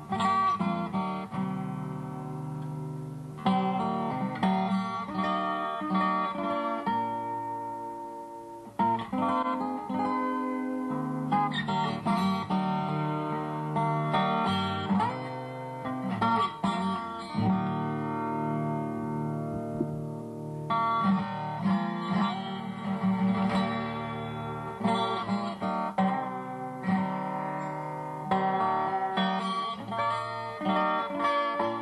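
Solo acoustic guitar fingerpicked live: an instrumental with ringing melody notes over bass notes and a couple of brief lulls between phrases.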